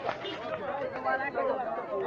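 Several voices talking at once, overlapping, indistinct chatter at close range.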